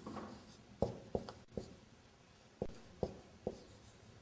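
Marker pen writing on a whiteboard: a string of short strokes and taps at irregular spacing, several in the first second and a half, then a pause, then a few more near the end.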